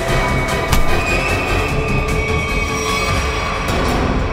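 Tense dramatic background score with sustained high held tones over a dense low layer, with a few brief hits.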